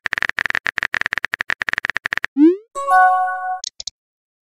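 Simulated phone-keyboard typing sound effect: a fast run of key clicks. About two and a half seconds in it gives way to a short rising swoosh, then a brief chime and two quick high blips, the sound of a chat message being sent and appearing.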